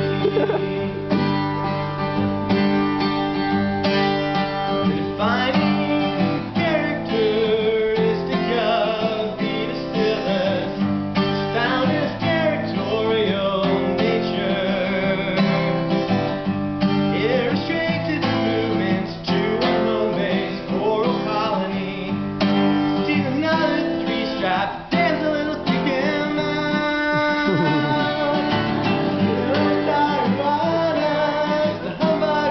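Steel-string acoustic guitar played as accompaniment to a man singing a song.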